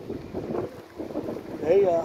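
Wind buffeting the microphone while cycling, a rushing noise that rises and falls. Near the end comes a short voiced sound, the rider's wordless 'uh' or 'hmm', which is the loudest moment.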